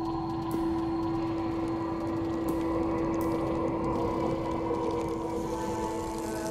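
A sustained, ominous ambient drone: one steady held low tone with fainter held tones above it over a low rumble.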